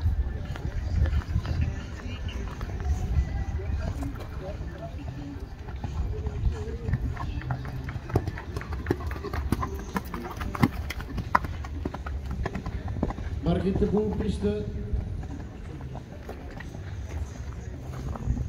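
Hoofbeats of a show-jumping horse cantering over sand footing, a run of soft thuds and clicks that is most distinct in the middle. A person's voice is heard briefly late on.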